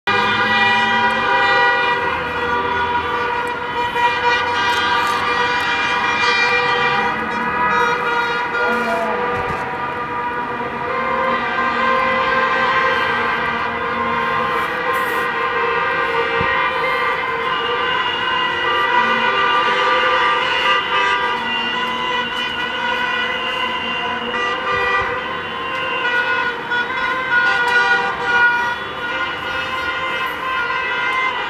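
A din of many car horns honking together without pause, overlapping steady tones at different pitches: a celebratory car parade (Autokorso) of football fans.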